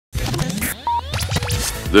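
Electronic intro music with sweeping effects that glide up and down in pitch, and quick clicks.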